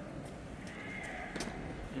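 Faint open-air ambience with two soft, short knocks, the first a little under a second in and the second about a second and a half in, and a brief faint high tone between them.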